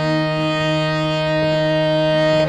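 Music: a sustained chord on a free-reed instrument held steady over an unchanging low drone.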